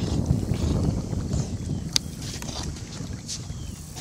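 Wind buffeting the microphone: an uneven low rumble, with a single sharp click about two seconds in.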